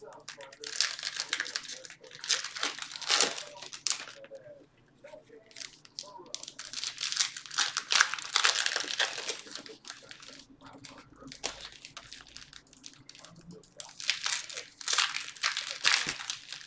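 Foil trading-card pack wrappers crinkling and tearing in irregular bursts as packs are opened and handled.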